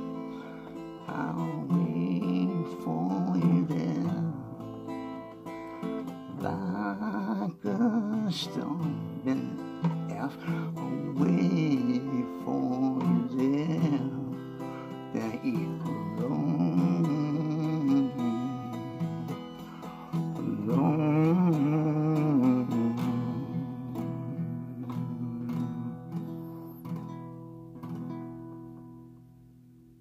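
Acoustic guitar strummed through the song's chords while a man sings long held notes with vibrato over it. The playing dies away over the last few seconds as the last chord rings out.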